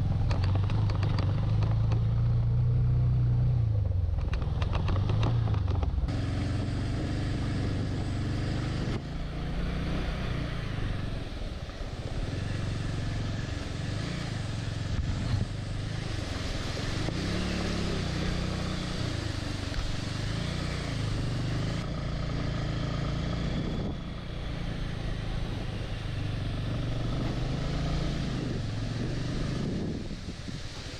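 Motorcycle engine running, its pitch rising and falling as the throttle changes, with a few abrupt jumps in the sound.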